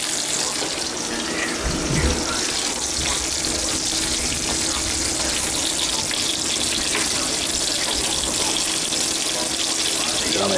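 Bacon frying in a skillet: a steady hiss of sizzling fat, with a low thump about two seconds in.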